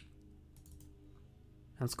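A sharp computer mouse click, then a few faint clicks over quiet room tone.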